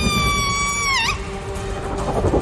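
A high-pitched, held squeal like a sped-up cartoon voice, steady in pitch, that dips and cuts off about a second in, over background music.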